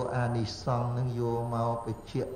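A man's voice chanting in Buddhist recitation style: drawn-out syllables held on a steady low pitch, one note sustained for about a second in the middle.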